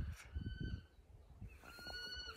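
A bird calling: two short, level, high-pitched whistled notes, the second starting near the end.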